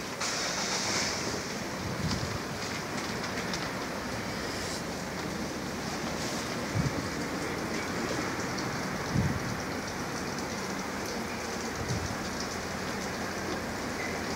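Steady outdoor hiss with no tone or rhythm, broken by a few soft low thumps about halfway and two-thirds of the way in.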